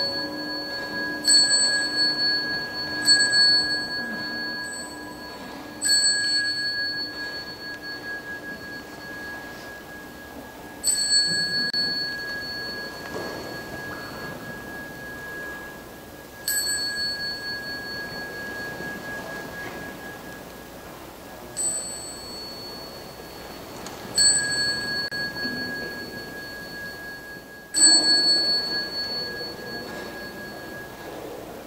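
A small high-pitched Buddhist ritual bell, struck about nine times at uneven gaps of two to five seconds, each strike ringing and fading; it paces the assembly's bows and prostrations. A deeper bell struck just before still rings at the start and dies away over the first dozen seconds.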